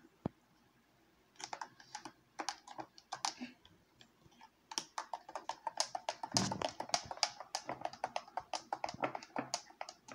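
Rapid, irregular clicking and tapping at a glass jar as its contents are mixed by hand, sparse at first and quick and dense through the second half, with one duller knock about six and a half seconds in.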